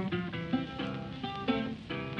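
Background music: a run of separate plucked acoustic guitar notes in an instrumental break between sung lines of a blues song.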